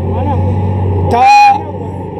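Street traffic: a vehicle engine rumbling low and steady, cut across about a second in by a short, loud pitched blast lasting about half a second.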